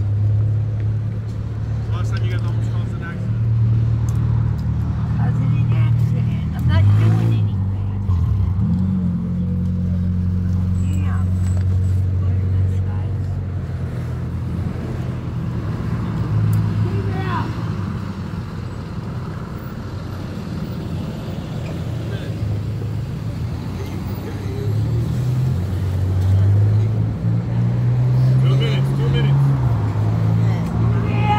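A large vehicle's engine running nearby, a steady low hum that steps up and down in pitch several times, over street traffic and a few indistinct voices.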